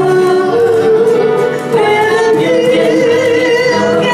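Two women singing long held notes together, backed by a small country band of acoustic guitar, steel guitar and upright bass, with a brief dip about one and a half seconds in.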